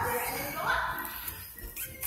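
Voices in a play room: a short, high, upward-gliding vocal sound from a young child a little over half a second in, with other voices behind it.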